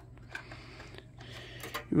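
Light plastic clicks and handling of RAM modules being unlatched and pulled from the desktop motherboard's memory slots, a few scattered clicks over a steady low hum.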